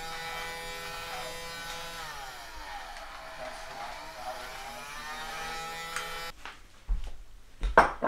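Toy vacuum cleaner's small motor running with a steady whine. Its pitch sinks and climbs back in the middle, and it cuts off about six seconds in. A few knocks follow near the end.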